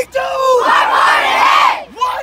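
A youth football team shouting its answer together in a call-and-response huddle chant: one long, loud group yell that drops away near the end.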